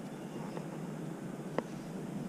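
Low, steady outdoor background noise with a single light click about one and a half seconds in.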